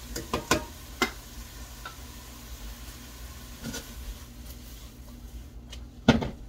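A few sharp, separate clicks and taps of a spoon on a salt container and pan while seasoning is added, most of them in the first second. Underneath is the faint sizzle of rice and vegetables cooking in a frying pan, over a steady low hum.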